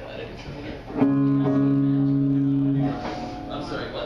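Amplified electric guitar struck once about a second in, a single sustained note or chord held steady for about two seconds and then cut off. Voices chatter faintly around it.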